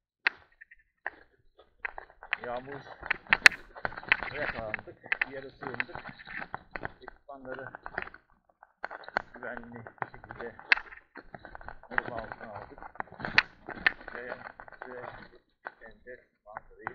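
A person talking, not clearly made out, with many sharp clicks and knocks throughout, loudest about three and a half seconds in.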